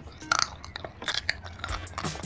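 Close-miked crunching and chewing of crunchy snack food, a run of irregular sharp crunches with the loudest a little after the start.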